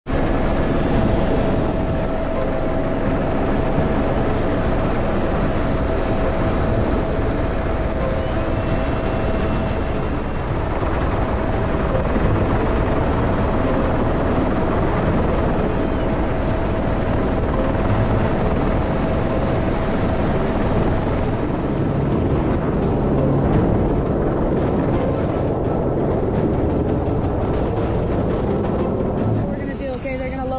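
Helicopter rotor and engine noise heard from inside the cabin with the door open, loud and steady throughout; a steady whine within it stops about two-thirds of the way through.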